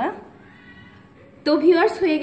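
A woman's voice, speaking briefly at the start and again from about one and a half seconds in, with a quieter gap between.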